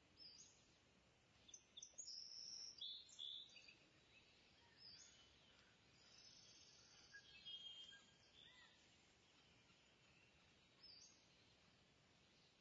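Near silence: faint room tone with scattered, brief high-pitched chirps of small birds.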